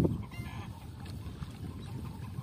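Chickens clucking over a steady low rumble, with a sharp thump right at the start.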